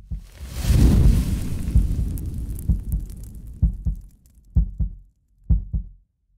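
Outro sound effect: a deep boom that swells over the first two seconds and fades, followed by low thumps in pairs about once a second, like a heartbeat.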